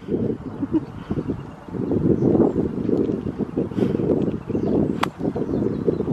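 Wind buffeting the microphone in uneven gusts, with one sharp click of a golf club striking a ball about five seconds in.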